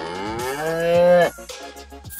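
A cow mooing: one long call that rises in pitch at the start, holds steady, and stops abruptly a little over a second in.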